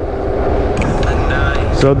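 Wind rushing over a GoPro microphone on a full-face helmet's chin guard while riding an electric bike: a steady low rumble and hiss, with a faint tune from a phone speaker underneath.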